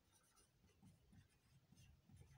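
Very faint strokes of a marker writing on a whiteboard: a few short scrapes amid near silence.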